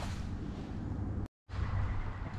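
Mountain bike rolling along a dry dirt trail: tyre noise on the dirt with wind rumbling on the helmet camera's microphone, mostly steady. There is a sharp knock at the start, and the sound cuts out completely for a moment about two-thirds of the way through.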